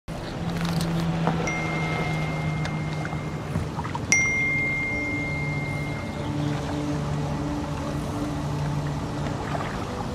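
Soft background score of low sustained notes, with two bright single-pitch dings ringing out, a faint one about a second and a half in and a louder one about four seconds in: phone text-message alert chimes.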